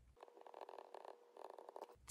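Near silence with faint, short scratching strokes of a pen writing.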